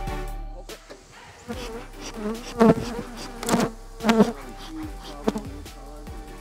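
Honeybees buzzing around an open hive, with several loud swells in the second half of the clip as bees fly close past the microphone.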